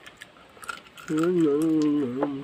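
A person eating, with small clicking mouth sounds, then about a second in a long, steady hummed "mmm" of the kind given while chewing food.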